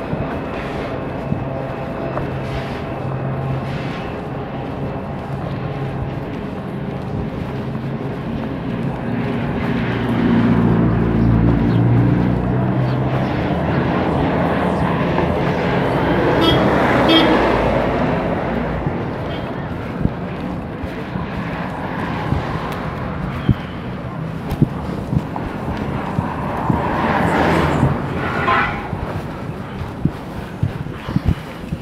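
Street traffic: a vehicle engine running with a low steady hum, louder from about ten seconds in, and a passing vehicle swelling to its loudest near the middle before fading.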